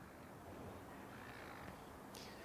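A crow cawing faintly, drawn out, through the quiet of the outdoor microphone.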